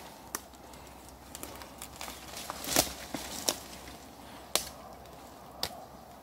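Rustling and crackling of moss, twigs and leaf litter as a hand searches through ground cover, with a handful of sharp snaps or clicks, the loudest near the middle.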